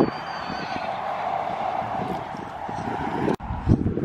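Horses walking on dry paddock ground, with soft, irregular hoof thuds over a steady rushing background noise that breaks off abruptly about three seconds in.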